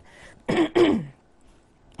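A woman clearing her throat: two short bursts close together, the second louder.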